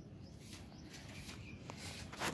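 Faint steady outdoor background noise, with one small click late on.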